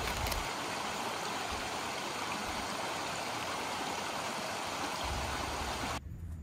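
Steady rushing of a flowing stream, an even water noise that cuts off suddenly at the end.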